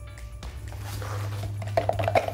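Background music with a steady low hum, and from near the end a wooden mixing stick stirring two-part top coat in a plastic mixing cup, scraping in a quick even rhythm.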